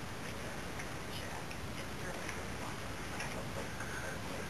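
Light ticking, about two ticks a second, over a steady low background hum.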